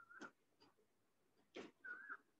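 Near silence with faint chalk-on-blackboard writing: a few short scraping strokes and two brief high squeaks, one at the start and one near the end.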